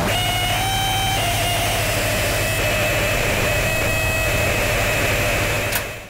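Japanese noise music (Japanoise): a loud, dense wall of distorted static over a low hum, with a few steady high whistling tones held through it. It cuts off suddenly near the end.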